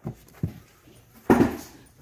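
Shrink-wrapped vinyl LPs being handled in a display bin: a faint click, then, about a second in, a louder knock with a plastic rustle as the records are set down and slid into place.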